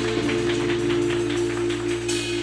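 Live band playing on electric guitar, bass guitar and drums: a held chord with a light, steady ticking about five times a second and no vocals.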